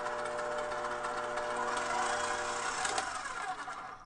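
KitchenAid stand mixer running, its wire whisk beating eggs in the steel bowl: a steady motor whine that fades in the last second.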